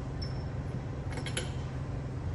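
A few light metallic clinks a little over a second in as a steel flywheel puller is handled against the engine's flywheel, over a steady low background hum.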